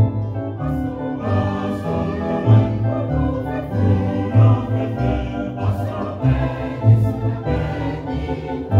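A church singing band of mixed men's and women's voices singing a hymn together in harmony, with a low bass note sounding about once a second beneath the voices.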